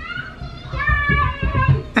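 Small children squealing excitedly as they run up, with thudding footsteps on a hardwood floor.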